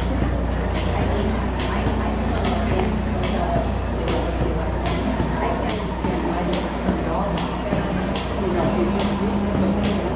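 Indistinct voices of people talking, over a steady low hum, with frequent short clicks throughout.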